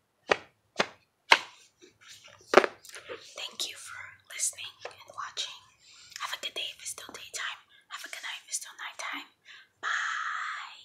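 Fingers tapping on a rigid cardboard box: a handful of sharp, separate taps over the first three seconds, then soft whispering for the rest.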